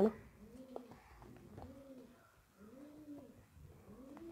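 Faint cooing of a bird: a series of soft coos, each rising and falling in pitch.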